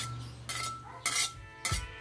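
Metal spatula scraping and knocking against a steel wok with a little oil in it, three short strokes over a steady low hum.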